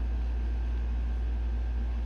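A steady low background hum, unchanging, with no other distinct sound over it.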